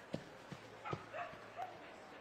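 A dog barking a quick series of about five short barks.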